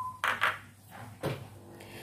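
Glass pot lid on a nonstick wok being handled, with a short rattle about a quarter second in and a sharp knock just over a second in, over a low steady hum.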